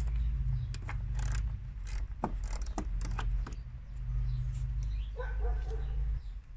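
Scattered metallic clicks and rattles from hands working at the heater hoses in a car's engine bay, over a steady low rumble. A brief high whine comes near the end.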